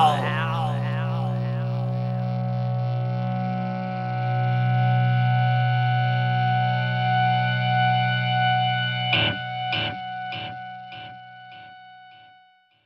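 The end of a rock song: a distorted electric guitar chord, wavering at first, then held and left ringing. Near the end it breaks into about six fading echo repeats before dying away.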